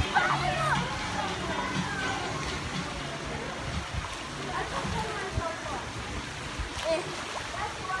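Swimming-pool ambience: background voices and music with a steady bass line, over water lapping and light splashing.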